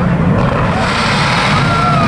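Engines of a large field of banger race cars running together on the grid, a steady mass of engine noise with no single car standing out.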